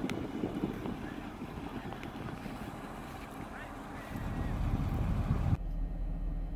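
Wind buffeting a phone microphone outdoors, a low rumbling noise that grows louder about four seconds in. Near the end it cuts abruptly to a quieter in-car background.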